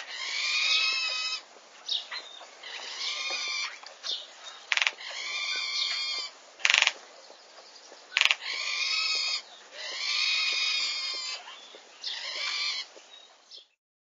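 A bird calling repeatedly: about seven harsh calls, each about a second long, with gaps between. Three sharp clicks fall in the middle stretch.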